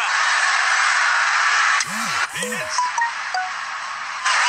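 Cricket stadium crowd making a loud, steady roar that breaks off about two seconds in, giving way to quieter crowd noise.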